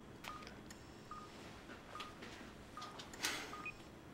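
Bedside patient monitor beeping softly, a short high tone about once a second in time with the pulse, over faint clicks, with a brief rustle a little after three seconds in.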